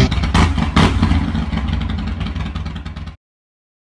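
Motorcycle engine revving, with a couple of quick blips in the first second, then running on while fading, before cutting off suddenly about three seconds in.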